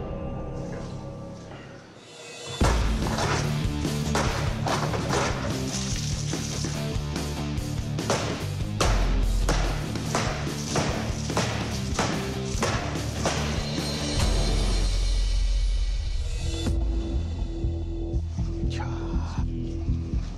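A hand-forged KA-BAR-style fighting knife is driven again and again into steel paint cans: a fast run of sharp metal impacts for about eleven seconds, starting a couple of seconds in. Dramatic background music plays throughout and carries on alone after the strikes stop.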